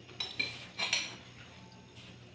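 Metal spoon clinking against ceramic bowls and plates as food is served and eaten, about four short ringing clinks in the first second.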